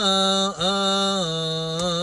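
A cantor chanting a Coptic liturgical hymn solo and unaccompanied, in long melismatic notes whose pitch wavers and steps downward. The line breaks briefly about half a second in, then continues on a long held note.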